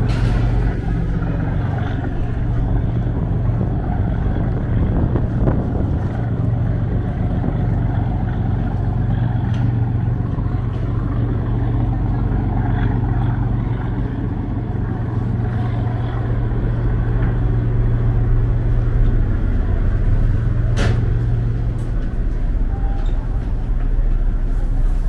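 Steady low drone of a docked passenger ferry's diesel engines running while passengers board, with one sharp knock near the end.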